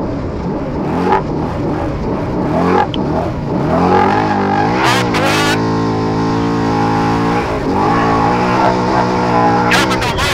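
Trophy truck's race engine heard on board at speed, its pitch dipping and climbing again a few times as the throttle and gears change, over a rumble of tyres on dirt. A voice cuts in briefly twice over the intercom.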